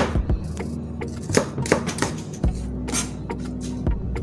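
Kitchen knife chopping onion on a plastic cutting board: a series of irregular sharp knocks, over background music.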